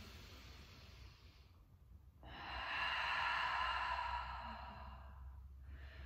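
A woman's deep cleansing breath: a faint inhale through the nose, then about two seconds in a long, louder exhale through the open mouth that tapers off over about three seconds.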